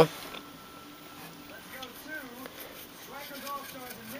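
A faint voice in the background, too quiet for its words to be made out, over quiet room tone.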